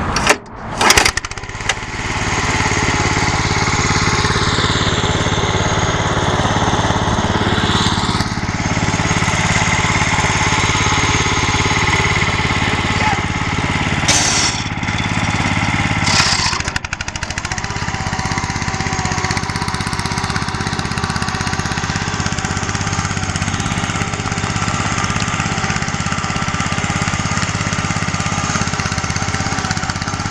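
Small lawn-tractor engine running steadily under load while pulling a heavy trailer, with a brief loud burst about a second in. A couple of short sharp noises come near the middle.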